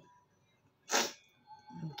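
A single short, sharp breath-like hiss about a second in, amid low room quiet, with a woman's voice starting again near the end.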